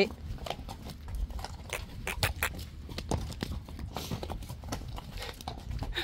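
Hooves of several Friesian horses walking on a concrete yard: irregular clip-clop steps.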